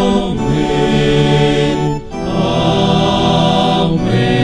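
A small group of men singing a slow chanted response, with an electronic keyboard playing along on an organ sound. The voices hold long notes in two phrases, with a brief break about halfway.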